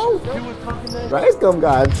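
Basketball being dribbled on an indoor gym's wooden floor, bouncing in short thuds, with men's voices talking over it.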